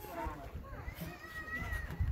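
A child's wordless, high-pitched vocal squeal held for about a second, rising slightly, after a couple of shorter pitched vocal sounds in the first second.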